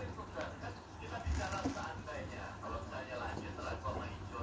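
Indistinct voices talking in the background over a low steady hum.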